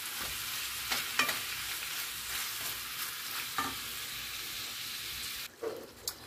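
Ground beef and sliced onion sizzling in a frying pan, a steady hiss broken by a few clicks and scrapes of a utensil stirring and breaking up the meat. The sizzle cuts off suddenly near the end.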